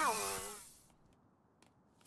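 A cat's meow: one call falling in pitch, under a second long.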